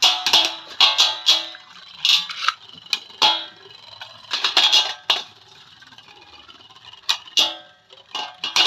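Two Beyblade spinning tops, Slash Valkyrie and Phoenix, battling in a steel dish: bursts of rapid metallic clicks as they collide and scrape, with the dish ringing after each clash. The bursts come about every second, ease off for a moment past the middle, and return near the end.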